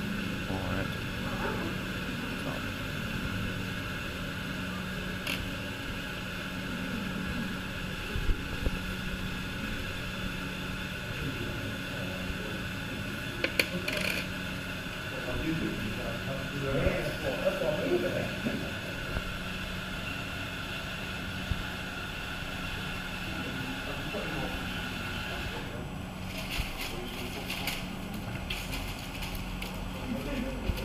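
Steady hum of diesel bus engines running at a town-centre bus stop, with faint voices of passers-by now and then.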